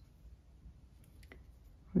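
Faint handling sounds of a tapestry needle and cotton yarn being stitched through knitted fabric, with a soft click a little past the middle.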